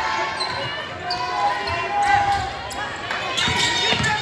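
Basketball game in a gym: many voices talking and calling out in an echoing hall, with a ball bouncing on the court. Several sharp knocks come close together near the end.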